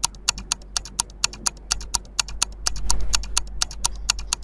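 Countdown-timer ticking sound effect: a steady run of sharp ticks, about four a second, over a faint low hum.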